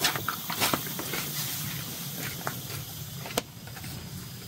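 Footsteps crackling over dry leaf litter and twigs, with scattered light snaps and one sharper snap about three and a half seconds in.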